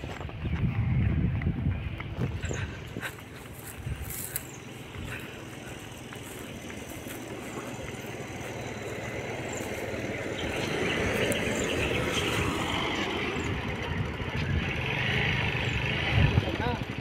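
A motor vehicle running on the road, getting louder through the second half as it comes closer.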